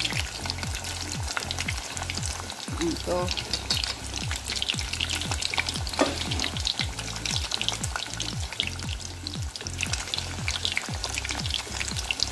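Salmon head pieces shallow-frying in hot oil over high heat, a steady sizzle full of small crackles and pops as the skin crisps. Chopsticks turn the pieces in the pot now and then.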